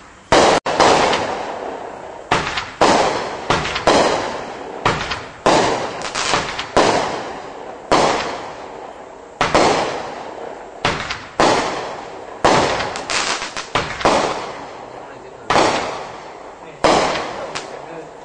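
Legend 'Screw Face' 25-shot consumer firework cake firing shot after shot. Each is a sharp bang with a tail that dies away over about a second, coming about one to two a second, some in quick pairs.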